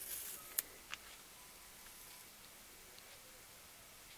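Faint handling of washi tape and a wooden clothespin: a little rustle and two small sharp clicks in the first second, then near silence.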